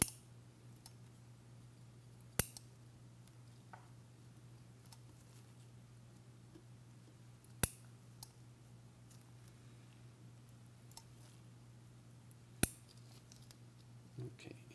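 Four sharp metallic clicks from a surgical needle holder being worked while suture knots are tied: one at the start, one about two and a half seconds in, one about halfway, and one near the end. A steady low hum runs underneath.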